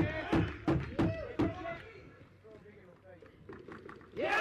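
Voices and several sharp knocks of box lacrosse play, sticks and ball, during the first second and a half, then quieter play with a few faint knocks.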